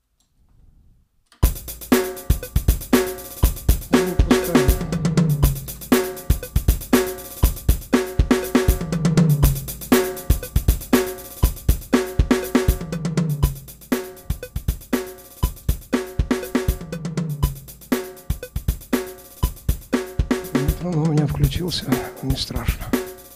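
Sampled drum kit from the Engine 2 virtual instrument playing back a MIDI groove of kick, snare, hi-hats and cymbals. It starts about a second and a half in and repeats as a loop roughly every four seconds, with a recurring low fill in each pass.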